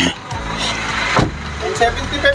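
A parked Toyota Hiace van idling with a steady low hum. Two sharp knocks sound a little over a second apart, and voices begin near the end.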